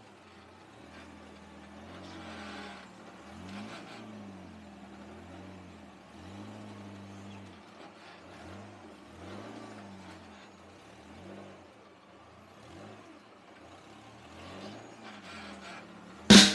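Faint rock crawler buggy engine revving in repeated short blips, its pitch rising and falling again and again as the rig climbs over boulders.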